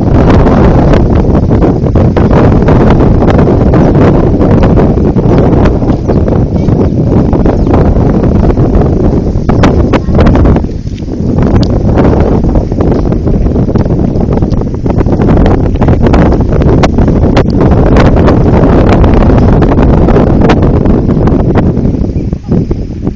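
Loud, steady rushing of wind buffeting the microphone, easing briefly about eleven seconds in, with scattered crackles.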